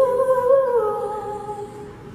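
A singer's voice holding one long note into a microphone with no clear accompaniment. The pitch lifts slightly about half a second in, settles back down, and the note fades away near the end.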